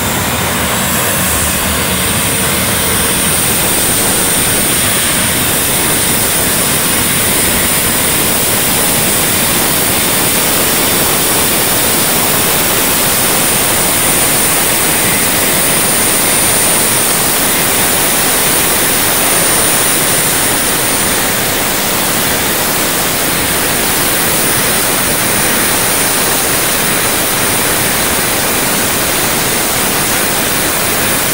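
Jet dragster's turbine engine running steadily: a loud, even rush with a thin high whine on top.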